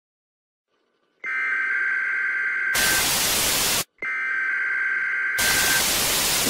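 A steady two-note electronic tone that breaks into a loud burst of TV-style static, played twice with a short silent gap between. It starts about a second in.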